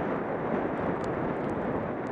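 Steady rushing noise of wind on the microphone mixed with skis sliding over packed snow during a downhill run.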